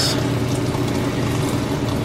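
Steady hum of a touch tank's water circulation system, a pump running under an even rush of moving water.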